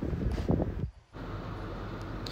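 Wind rumbling on the microphone, a low steady noise, cut off to silence for a moment about halfway through.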